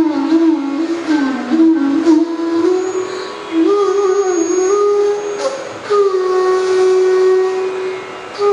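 Bansuri (bamboo transverse flutes) playing a phrase of Raag Bhupali, with gliding ornaments between notes, settling about six seconds in on one long held note, over a steady drone.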